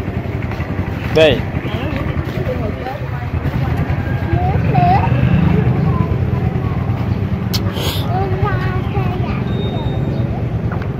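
Steady street traffic, mostly motorbike engines running nearby, with a constant low rumble that swells slightly near the middle. Brief voices cut in now and then.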